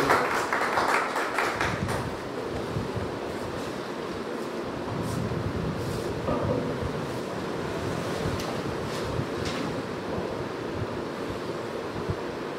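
Audience applause dying away over the first couple of seconds, then a steady hiss of room noise with a few scattered knocks and clicks.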